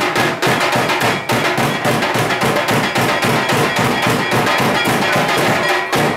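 Temple festival drumming: a large drum beaten in a fast, steady rhythm of several strokes a second, with a ringing tone sounding above it.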